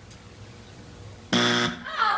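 Game-show time-out buzzer: one short, harsh buzz of about a third of a second, coming about one and a half seconds in, signalling that the three seconds allowed to answer have run out.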